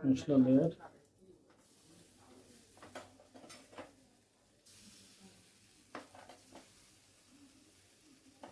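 A man's voice briefly at the start, then a few faint, scattered taps and clicks of kitchen utensils being handled during food preparation.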